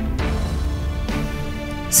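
Background drama score: soft music of sustained, held notes.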